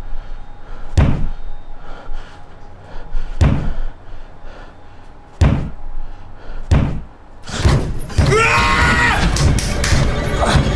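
Horror-film sound design: four heavy slamming thuds spaced one to two seconds apart over a low dark music bed, then near the end a dense, loud burst with a wavering, falling shriek.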